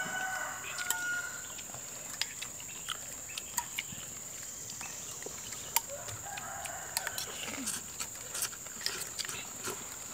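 People eating soup with noodles: spoons and forks clinking now and then against bowls, and soft slurping, over a steady high-pitched tone in the background.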